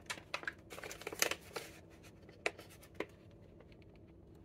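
Plastic Kit Kat snack bags crinkling as they are handled, in dense crackling bursts for the first couple of seconds, then two single sharp crackles about half a second apart.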